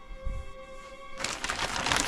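Soft background music holding a sustained chord. About a second in, crinkling of packaging starts as the next item is handled.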